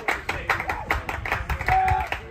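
Fans or a dugout clapping in a steady rhythm, about four to five claps a second, over crowd voices, with a short held call near the end.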